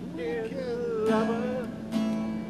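Music: a voice singing a slow, gliding melody over guitar accompaniment, one long note held through the middle.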